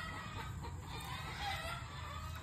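Chickens clucking faintly in the background, a scatter of short soft calls.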